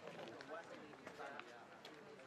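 Faint, indistinct voices of a group of people talking, with a few soft footsteps.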